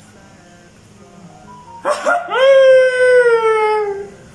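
A man's long, high-pitched excited scream, starting about two seconds in and held for about two seconds, its pitch sliding slowly downward.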